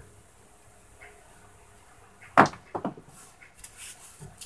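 A pair of dice thrown the length of a craps table: quiet for about two seconds, then a sharp knock as they strike, followed by a few smaller clicks as they tumble and come to rest.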